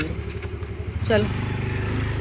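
Motorcycle engine idling with a steady low hum that grows louder just past a second in.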